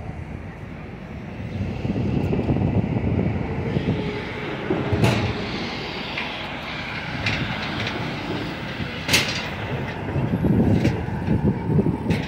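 Busy city-street traffic noise, heavy in the low range and swelling a couple of seconds in, with a few sharp knocks about five and nine seconds in.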